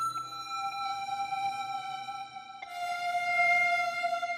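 Synthesized string-pad preset (Ableton's MPE Warping Strings) played on a Roli Seaboard RISE: held, sustained notes, moving to a new, slightly lower chord about two and a half seconds in.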